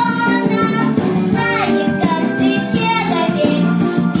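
A young girl singing a pop song over instrumental backing music.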